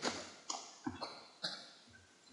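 Computer keyboard keys being typed: about five separate taps.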